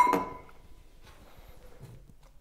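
A drinking glass clinks once right at the start, its ring fading within about half a second; after that only a few faint small knocks.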